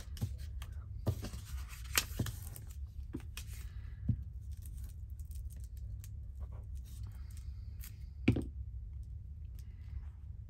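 Paper being handled and a glue stick rubbed over a small paper cutout, with a few light clicks and taps, the sharpest one near the end. A low steady hum sits underneath.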